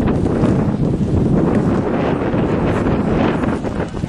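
Wind buffeting the camera's microphone: a loud, rough, continuous rumble.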